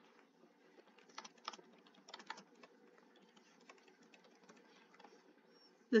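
Faint typing on a computer keyboard: a short sentence typed out in irregular, light key clicks starting about a second in.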